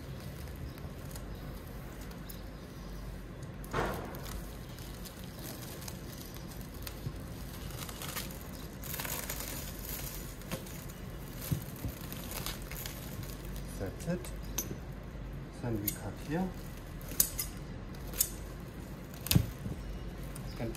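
Plastic stretch film being pulled off its roll and wound round an inflatable pipe packer, with scattered short clicks and taps that come more often in the second half.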